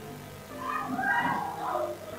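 A cat meowing, drawn-out calls that rise and fall in pitch starting about half a second in, over steady background music.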